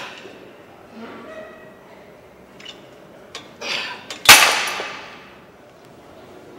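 Gym weights clanking: one sharp metallic clank a little past four seconds in that rings out for about a second, with a shorter rustle and knock just before it.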